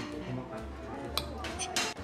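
A knife and fork clink and scrape against a ceramic plate as a pancake is cut, with a couple of sharp clinks about a second in and near the end, over steady background music.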